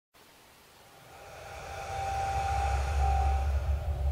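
Song intro fading in: a low rumbling swell that rises steadily from near silence and grows louder, with a faint high held tone through the middle.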